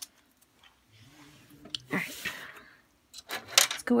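Mostly quiet handling of a plastic dollhouse and its small pieces: a faint low murmur about a second in, a short rustle about two seconds in, then a woman's speech starting just before the end.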